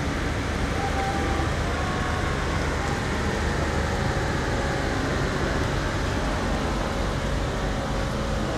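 Steady engine and road noise of convoy cars and SUVs running at low speed, with no sudden sounds.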